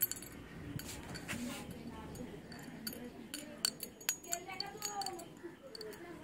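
Small metal keychain with a dangling charm jingling, in a run of light, irregular clinks and ticks.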